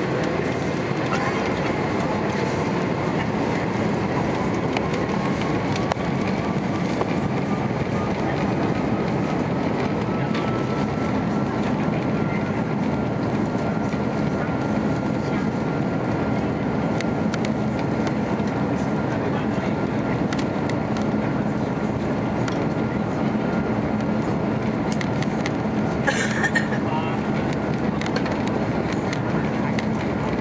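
An Airbus A330-243's Rolls-Royce Trent 700 turbofan engines heard from inside the cabin behind the wing. The steady engine noise carries a whine that rises over the first dozen seconds and then holds steady as the engines spool up for takeoff. There is a short, sharper sound about 26 seconds in.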